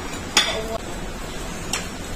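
A sharp clink of a metal spoon against a ceramic dish about a third of a second in, then a lighter clink near the end.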